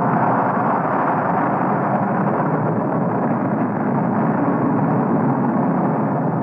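Steady, even roaring rumble of a nuclear bomb test explosion on an old film soundtrack, thin and muffled, with no deep bass.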